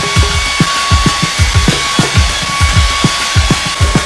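Handheld hair dryer blowing steadily, with a thin high whine over its rushing air, in use on long hair. Background music with a regular thudding drum beat plays underneath.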